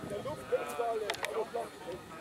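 People's voices talking and exclaiming in wavering tones, over the low idle of a model aerobatic plane's GP 123 engine as the plane taxis on grass.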